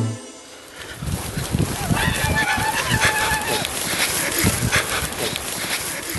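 The banda music cuts off, and after a brief lull a rough, noisy scuffle of thumps and knocks sets in, with one long high cry about two seconds in.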